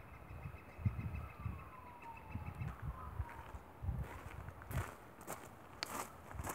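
Wind buffeting the microphone in low gusts, with a distant vehicle passing whose faint tone falls slowly in pitch through the middle. Near the end come a few crunching footsteps on a gravel path.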